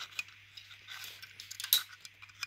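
A few light clicks and taps of the plastic rear-wheel cover of a Xiaomi Pro 2 electric scooter being handled against the wheel, the sharpest near the end, over a low steady hum.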